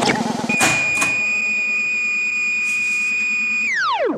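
Logo ident jingle: a held electronic tone with overtones that slides steeply down in pitch near the end, after a brief warbling start.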